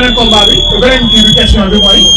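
A steady, high-pitched, whistle-like tone holds for about two and a half seconds, dropping slightly in pitch near the end, while men talk over it.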